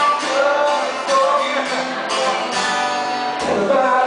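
Live male vocal with a steadily strummed acoustic guitar: a singer-songwriter performing an original song.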